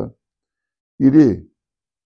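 A man's voice: one short pitched hesitation sound, about half a second long, about a second in, with dead silence either side of it.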